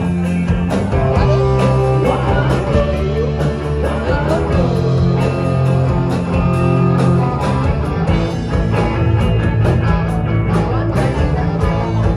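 Rock band playing live, with singing, electric guitar, bass and drums keeping a steady beat.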